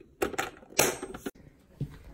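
A small metal suitcase-shaped tin being handled and closed on a wooden table, making two short scraping rattles in the first second or so. A soft thump comes near the end.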